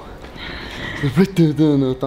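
A man laughing: a drawn-out, wavering laugh in the second half, after a softer breathy stretch.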